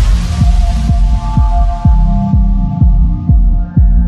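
Electronic background music with a heavy bass kick drum beating about twice a second under held synth notes, opening with a cymbal crash.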